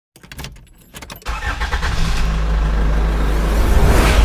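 A few sharp clicks, then a deep, engine-like rumble that starts about a second in, with a rushing whoosh that builds toward the end.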